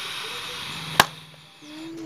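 A man humming faintly, broken by a single sharp click about a second in. After the click the background hiss drops away, and a short hummed note follows near the end.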